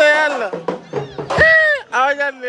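Loud, high-pitched human cries that swoop up and fall away in pitch: one at the start and a longer falling cry about a second and a half in.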